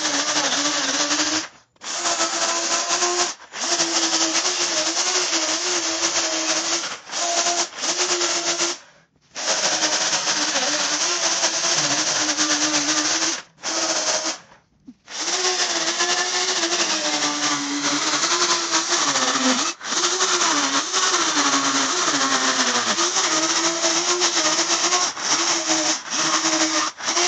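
Electric chainsaw running and cutting into the wood of a fig trunk, its pitch wavering and dipping as the chain bites. It stops dead and starts again several times as the trigger is let go and pulled.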